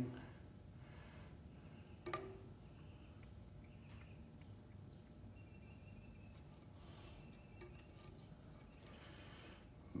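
Near silence: room tone, with one short faint click about two seconds in and a few soft handling noises later.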